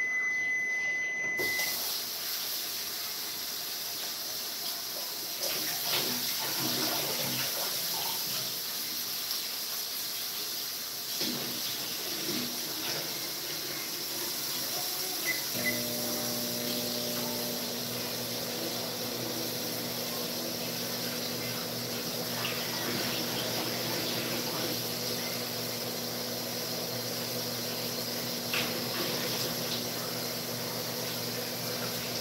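Water running steadily from a kitchen tap, a hiss that starts a second or so in just as a high beep ends. A steady low hum joins about halfway through.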